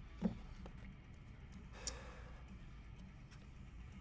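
Quiet handling of trading cards and their box: a soft click about a quarter second in and a brief rustle about two seconds in, with a few faint ticks over a low steady hum.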